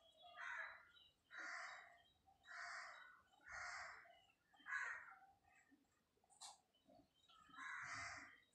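A bird calling over and over, short harsh calls about once a second, with a pause of about two seconds past the middle.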